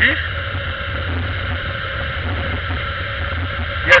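Honda motorcycle engine running steadily while riding along a road, with wind rushing past the microphone.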